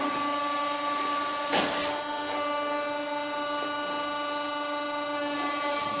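Hydraulic press's pump motor switching on abruptly and running with a steady, even hum while the press builds pressure on the plates. A short knock comes about a second and a half in.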